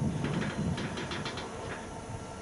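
An approaching train, still some way off: a low rumble with a run of faint clicks through the middle, fading slightly toward the end.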